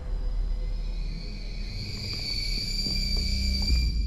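Tense trailer score: a low rumbling drone under a high, thin sustained tone that swells in after about a second and a half and holds.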